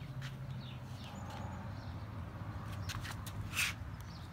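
Outdoor ambience: small birds chirping repeatedly over a low steady hum, with a brief rustling noise about three and a half seconds in.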